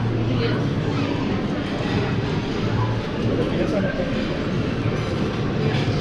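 Steady din of a busy buffet dining hall: many people chattering at once over a low, steady rumbling hum.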